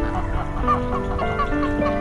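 Greylag geese giving short, repeated calls, several a second, over soft background music with held notes.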